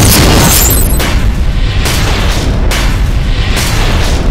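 Loud cinematic boom sound effect of a news title sting. It hits suddenly at the start, then a deep rumble runs on under music, with a sharp hit about every second.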